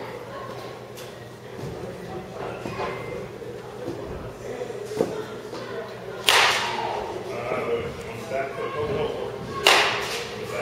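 Baseball bat hitting balls twice, two sharp cracks about six seconds in and near the end, each ringing briefly in a large indoor hall. Fainter knocks come earlier, with distant voices underneath.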